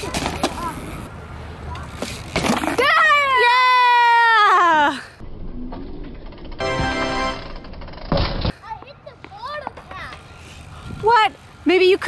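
A child's long drawn-out shout, falling in pitch, then a short loud burst of noise about eight seconds in.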